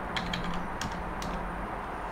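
Computer keyboard being typed on: a handful of separate keystroke clicks, the last word of an answer being typed and entered.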